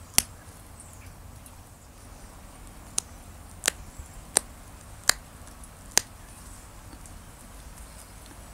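Small flakes snapping off the edge of ancient Roman glass under a copper pressure flaker: about six sharp clicks, irregularly spaced, the last about six seconds in. Each click is a tiny flake popping free as notches and barbs are pressed into the arrowhead's base.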